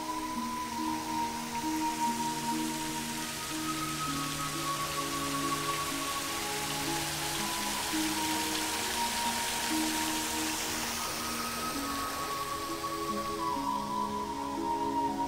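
Soft background music of held, slowly changing notes over the steady splash of water falling in a fountain basin; the splashing grows louder in the middle and fades again toward the end.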